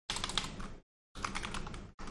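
Typing on a computer keyboard: rapid key clicks in two short runs with a brief pause between them.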